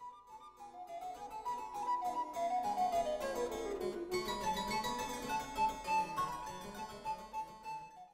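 Harpsichord playing Baroque music in fast plucked notes, with a descending run about three seconds in and then held higher notes.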